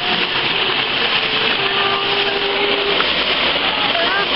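Steady rush of flowing stream water, an even hiss that doesn't change, with faint voices in the background.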